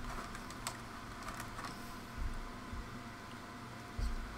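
Light clicks and rustles of small plastic figure parts and their plastic packaging being handled on a tabletop, with a couple of soft thumps a little after two seconds in.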